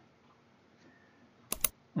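Low room tone, then two sharp computer clicks in quick succession about three-quarters of the way in.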